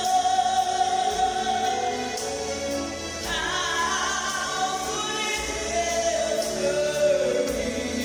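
A woman singing a gospel song solo into a handheld microphone over musical accompaniment, holding long, wavering notes; near the end a held note slides down.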